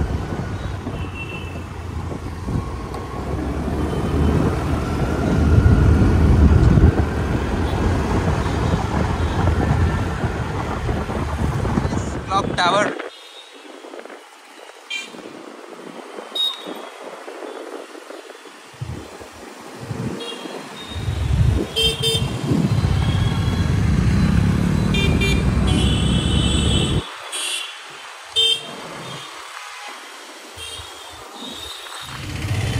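Street traffic heard while riding on a two-wheeler: heavy wind buffeting on the microphone for about the first thirteen seconds, cutting off suddenly, then lighter traffic noise with several short vehicle horn toots in the second half.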